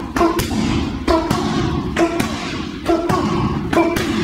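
Hand strikes slapping a handheld striking pad in a block-punch drill: pairs of sharp smacks a fraction of a second apart, repeating about once a second.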